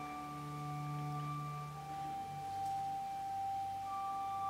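Soft organ music: slow chords of long held notes, the bass note stepping down about two seconds in.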